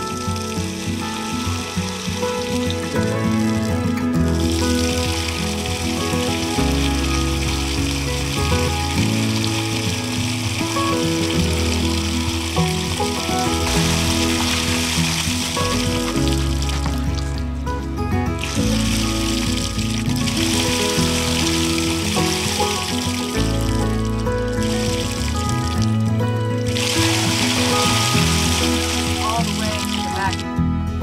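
Background music with a steady, changing bass line, laid over water pouring and splashing onto the ground as a waterlogged RV underbelly is drained of leaked water. The splashing hiss runs in stretches, stopping briefly twice.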